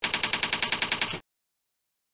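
Typing sound effect: a rapid, even run of about a dozen key clicks, one for each letter as text is spelled out. It cuts off a little over a second in.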